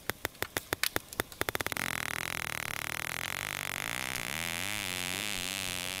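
Recorded bottlenose dolphin echolocation clicks: a train of separate clicks that quickens over the first two seconds, then merges into a continuous buzz that wavers and rises, over a steady background hiss. The buzz is the dolphin homing in on a fish, its clicks coming so fast they sound continuous.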